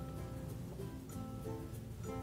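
Instrumental background music: a steady run of short, soft melodic notes.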